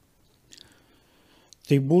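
A quiet pause in a man's talk: a faint mouth click with a soft breath about half a second in, then his speech starts again near the end.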